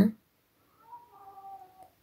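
A voice breaks off at the very start. Then comes a faint, short, high-pitched cry, under a second long, around the middle of a near-silent pause.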